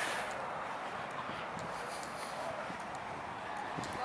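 Faint steady outdoor background noise with a few light ticks scattered through it; no distinct sound stands out.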